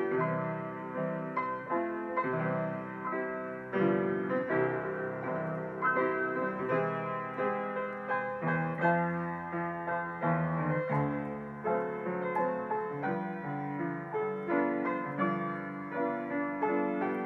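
Solo acoustic grand piano being played with both hands: a steady flow of melody notes over chords and bass notes.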